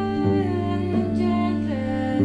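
Cello bowed in a slow melody over a steady low drone, the melody moving to a new note about every 0.7 seconds.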